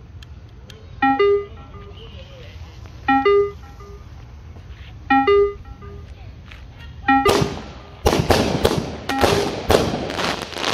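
A short electronic jingle repeats about every two seconds; about seven seconds in, consumer firework cakes set off on the street start firing, with a fast, dense run of crackling pops and bangs that keeps going.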